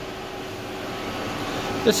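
Steady drone of boiler-room machinery with a constant hum tone running under it; a man's voice starts right at the end.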